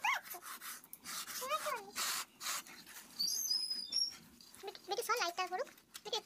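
Short, wavering whimpering calls, three times (at the start, about a second and a half in, and about five seconds in), between the soft rubbing of hands rolling rice-flour dough strands on a woven mat.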